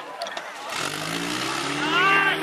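A portable fire pump's engine comes in about two-thirds of a second in and runs hard at a steady pitch. Raised voices shout over it near the end.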